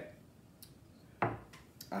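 A stemmed tasting glass set down on a wooden table with a single short knock about a second in, with a couple of faint clicks around it.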